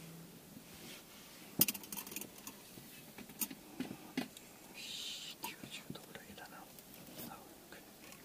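A small stainless steel cup being handled over a small burner on a steel tray: a few light metal clinks and knocks, the sharpest about one and a half seconds in, and a soft hiss around the middle.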